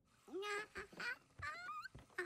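A baby's voice babbling in several short, squeaky calls that bend up and down in pitch.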